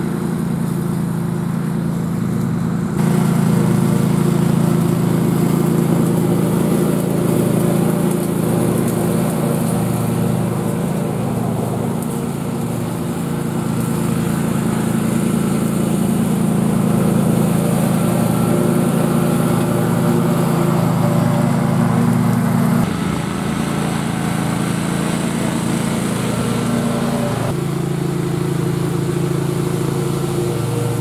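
Bucket truck engine running steadily, picking up speed and getting louder about three seconds in, then dropping back at about twenty-three seconds.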